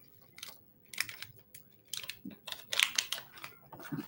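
Fingers picking and scratching at the edge of a thin sheet of material: a run of small, irregular clicks and scratches.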